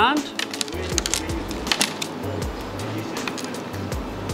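Scattered light clicks and rattles of a plastic spool of fishing leader line and other small tackle being picked up and handled on a wooden counter.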